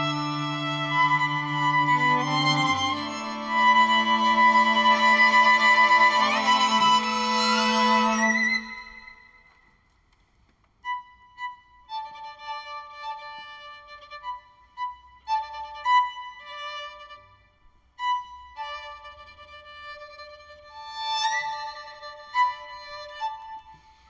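String quartet of two violins, viola and cello playing a contemporary piece: for about nine seconds a dense layer of held notes over low cello notes, with a rising slide near the end of it. After a brief break, the violins return with sparse, separate high held notes, each starting sharply.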